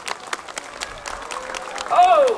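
Audience applauding: a spread of separate hand claps rather than a dense roar.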